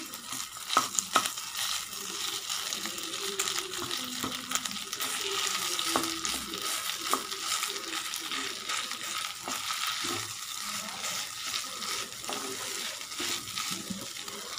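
Cooked rice and carrot masala sizzling in oil in a pan while a wooden spatula stirs and scrapes it through, with a couple of sharp knocks of the spatula against the pan about a second in.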